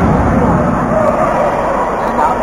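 Steady hubbub of many voices talking and calling, echoing in a large sports hall.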